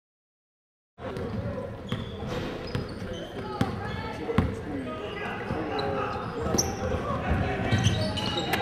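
Silent for about the first second, then a basketball game in a gym: a ball bouncing on the hardwood floor, with sharp knocks, and players' and spectators' voices echoing in the hall.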